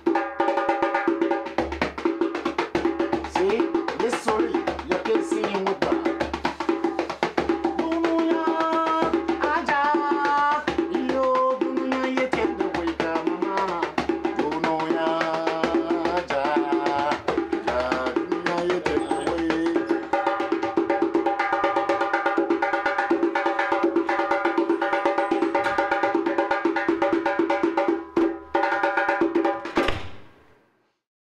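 Djembe played by hand in a fast, steady rhythm that mixes slap, tone and bass strokes. A man's voice sings over the drumming for several seconds in the middle.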